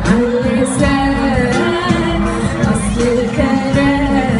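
A live pop song with singing, played loud through a concert sound system and recorded from the crowd.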